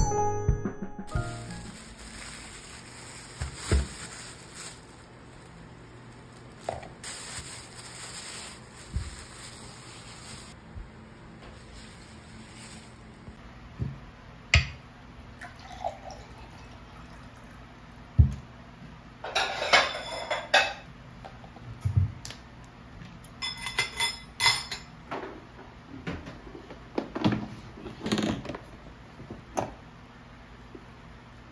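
A music jingle ends in the first second, then quiet tabletop sounds: scattered knocks and clinks of dishes and utensils, and water poured from a plastic pitcher into a glass, over a faint steady hum.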